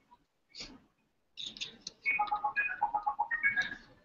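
Google Tone Chrome extension broadcasting a URL from a laptop: a quick string of short electronic beeps at shifting pitches, starting about a second and a half in and lasting about two and a half seconds. A brief soft noise comes about half a second in.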